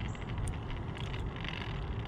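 Steady low rumbling outdoor background noise with no distinct event; the parked RC car is silent.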